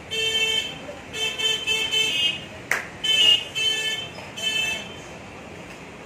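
A vehicle horn sounding in a run of short toots, about eight of them over four and a half seconds, each on one steady pitch. A single sharp click falls about halfway through.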